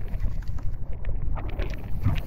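Low, steady rumble of wind buffeting the microphone, with a few light clicks and ticks over it.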